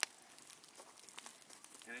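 Wood fire crackling in an open steel cone kiln as pruning wood burns down to charcoal: one sharp pop at the start, then a few faint scattered crackles.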